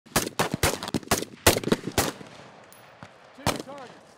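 Rapid, irregular rifle fire from M4 carbines on a qualification range: about ten sharp shots packed into the first two seconds, then a single shot about three and a half seconds in.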